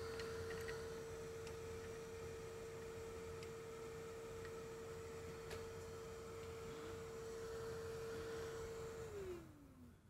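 Small blower fan of a hot air rework station running with a steady hum, then switching off about nine seconds in, its pitch falling as it spins down. A few faint ticks along the way.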